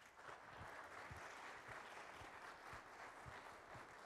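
Audience applauding steadily and fairly faintly, welcoming a speaker to the stage. Faint low thuds come about twice a second beneath the clapping.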